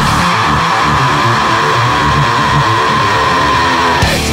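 Heavy rock music: distorted electric guitars and bass playing a riff, with no drum hits and no singing.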